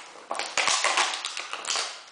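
Plastic water bottle crackling and clicking as a puppy chews and paws at it on a concrete floor: a dense run of crinkles starting about a third of a second in and stopping just before the end.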